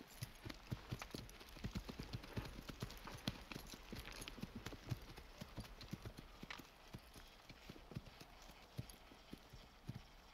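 Two horses walking, their hooves clopping irregularly on frosty ground. The hoofbeats come thickly at first and thin out in the second half.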